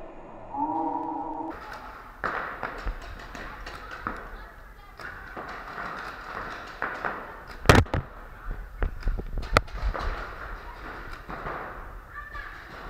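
Paintball markers firing in scattered, irregular pops and snaps, with two sharper, louder shots near the middle. A brief steady tone sounds about half a second in, just before the firing begins.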